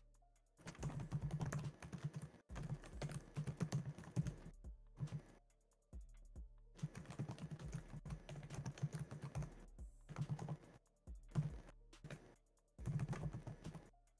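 Typing on a computer keyboard: quick runs of keystrokes in several bursts, with short pauses between them.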